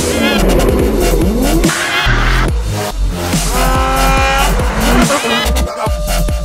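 Drift car engine revving with tyres squealing, mixed with electronic music that has a heavy pulsing bass beat.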